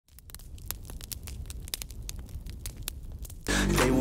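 Crackling fire sound effect: a low rumble with irregular sharp pops and crackles. Loud music cuts in suddenly near the end.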